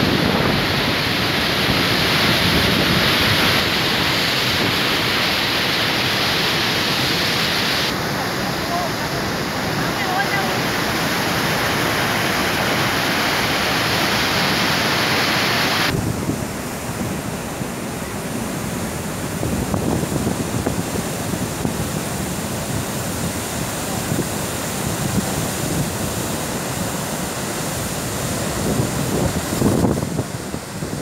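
Dam spillway discharging, a steady loud rush of water and spray, with wind buffeting the microphone. The noise changes abruptly about eight seconds in and again about halfway through.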